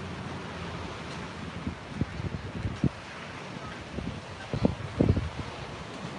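Wind blowing on the microphone: a steady hiss with several short low buffets in the second half.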